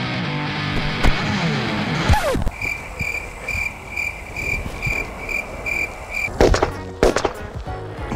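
Background music, then a repeating beep about twice a second, then a firecracker buried in a dirt pit going off near the end as several sharp bangs in quick succession. It is a weak blast that shifts only a little soil.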